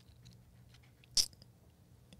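Faint mouth noises close to a studio microphone: small lip and tongue clicks, with one short, sharper smack about a second in.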